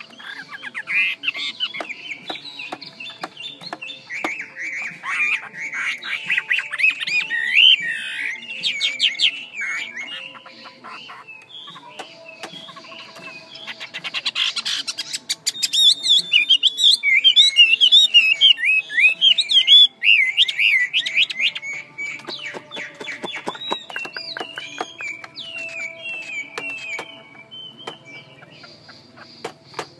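A caged female Chinese hwamei calling in a long, fast run of chattering, twisting whistled notes. It comes in two loud stretches with a short lull between them, and sharp clicks are mixed in.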